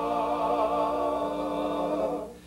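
Men's barbershop quartet singing a cappella, four voices holding one long chord.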